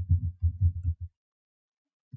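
Computer keyboard typing: about six quick, dull thumps in the first second.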